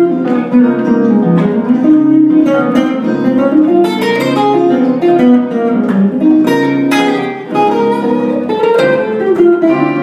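Semi-hollow electric guitar played with a pick: an improvised lead line of quick single notes, many attacks each second.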